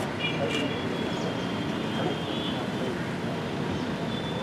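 Outdoor background: a low murmur of voices over a steady hum of traffic, with a few thin high chirps near the start and again around the middle.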